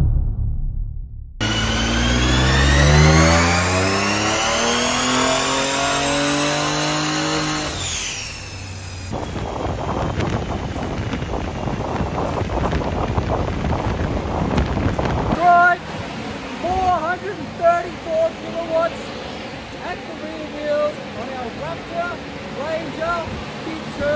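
Ford Ranger Raptor's 3.0 L V6, fitted with an aftermarket twin-turbo kit, under full throttle on a chassis dyno: its pitch climbs steadily for about six seconds through a power run, then drops sharply as the throttle is closed, followed by a rushing noise that fades down.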